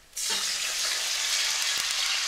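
A stainless sauté pan of hot olive oil with sliced garlic and pepper flakes sizzling steadily as white wine is poured into it. The sizzle starts abruptly just after the start.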